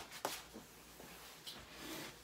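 Faint rustling and handling noise from someone moving about on a bed, with one sharp click about a quarter of a second in.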